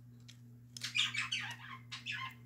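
Plastic K'Nex claw model squeaking and clicking as it is handled right up against the microphone: a quick run of short squeaks and clicks starts about a second in. A steady low hum runs underneath.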